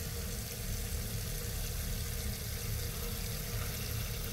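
Kitchen faucet pouring a thin stream of water onto a dried resurrection plant in a copper mug, filling the mug: a steady, even splashing hiss.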